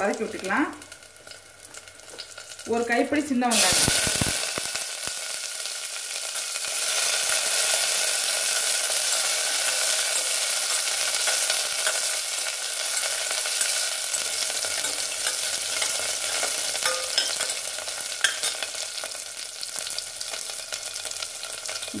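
Shallots hitting hot oil in a steel pressure cooker, bursting into a loud, steady sizzle about four seconds in, while a perforated steel ladle stirs them with occasional clicks against the pan.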